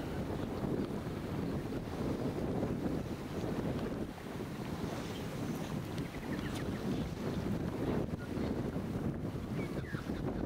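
Wind blowing across the camera's microphone: a low rumbling noise that rises and falls with the gusts.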